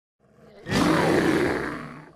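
A bear's roar used as an intro sound effect: faint at first, then a loud roar that starts suddenly just under a second in and fades away over about a second.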